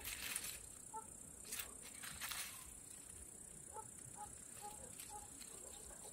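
Faint rustling of dry onion skins and tops under a hand, a few brief rustles in the first couple of seconds, over a steady high chirring of crickets.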